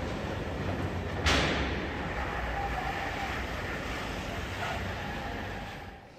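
Vehicles running on an indoor off-road demonstration course in a large exhibition hall: a steady low engine rumble under general hall noise, with a sudden louder rush about a second in that slowly dies away.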